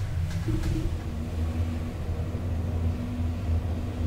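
KONE traction elevator car travelling in the shaft, heard from inside the car: a steady low rumble with a faint steady hum joining about half a second in.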